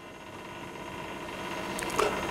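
Steady room hiss with faint, even hum tones, slowly growing louder, with a faint click near the end.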